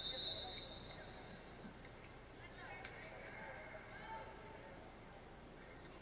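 Referee's whistle: one steady high blast of about a second and a half, the signal to serve, followed by faint gym ambience.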